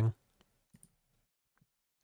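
Faint computer mouse clicks in near silence: two quick clicks a little under a second in, then one more later.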